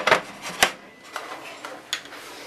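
A few sharp clicks and light knocks of kitchen handling. The loudest comes right at the start, then three fainter ones follow at roughly half-second intervals.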